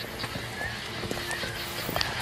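Footsteps of several people walking on a cobblestone path, shoes clicking irregularly on the stones.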